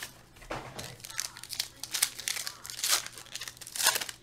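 Foil trading-card pack wrapper crinkling and tearing as it is pulled open by hand, in irregular crackles.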